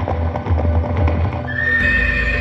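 Music with horse hooves clip-clopping, then a horse whinnying with a high call starting about three-quarters of the way through.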